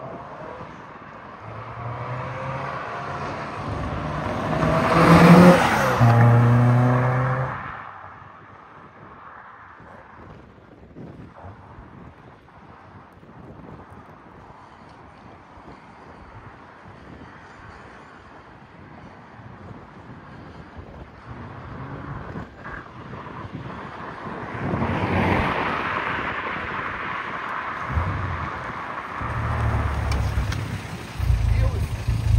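2003 Lotus Elise 111S, a 1.8-litre Rover K-series four-cylinder with a sports exhaust, accelerating past with rising revs, loudest about five seconds in, then fading away. After a quieter stretch it comes back past again around 25 seconds in and ends running at low revs close by.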